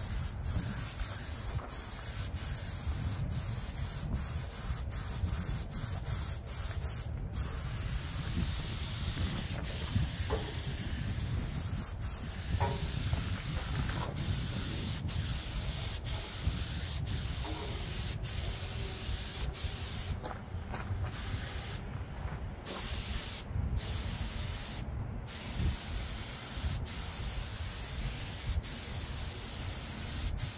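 Compressed-air spray gun with a siphon cup spraying paint: a steady hiss over a low rumble. It breaks off briefly several times about two-thirds of the way through as the trigger is let go between passes.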